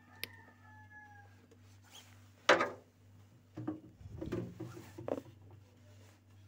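Plastic refrigerator crisper drawer being handled: one sharp loud knock about two and a half seconds in, then a run of softer knocks and rustles, over a steady low hum.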